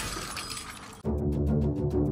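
Glass panes of a phone booth shattering, the crash of breaking glass dying away over the first second, followed by music with a fast ticking beat.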